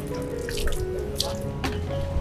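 Water poured from a plastic hand dipper, splashing over a man's body and onto the wet ground in several splashes.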